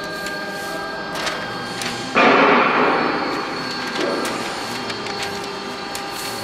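Paper sheets and MDF blanks handled and slid across a membrane press table over a steady workshop hum. A sudden loud rustling burst comes about two seconds in and fades over about a second, with a smaller one near four seconds.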